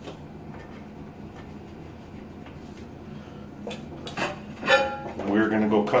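Ceramic tile clinking and scraping against the stacked tile pieces as it is picked up: a few sharp clinks in the second half, after a quiet stretch, then a man's voice.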